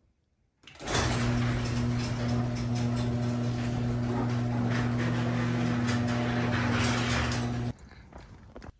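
Overhead electric garage door opener raising a sectional garage door: a steady motor hum with the rattle of the door rolling up. It starts about a second in and cuts off suddenly near the end as the door reaches the top.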